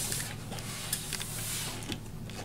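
Air hissing out of the neck of an inflated rubber balloon as it is stretched over a plastic bottle top, with a few small rubbing clicks from handling. The hiss eases off near the end.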